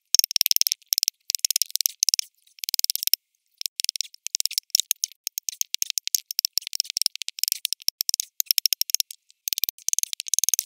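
Rapid high-pitched clicking and rattling in irregular bursts separated by brief gaps, with no low thuds.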